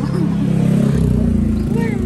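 A motor vehicle's engine running close by on the street, a loud steady low rumble that grows heavier about a second in.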